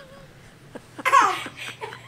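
A man laughing hard: a quiet first second, then a loud high-pitched burst about a second in, followed by a few smaller breathy bursts.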